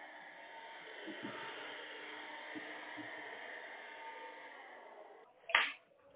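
Faint, steady hiss of an open telephone line, with a few faint knocks. It cuts off about five seconds in, and a brief loud sound follows near the end.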